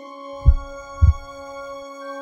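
Heartbeat sound effect: two low thumps about half a second apart, over soft background music of held tones.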